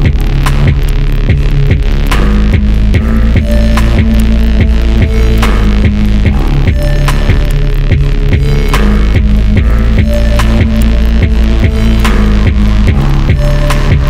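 Loud riddim dubstep with a heavy, throbbing bass line that steps between low notes under regular drum hits.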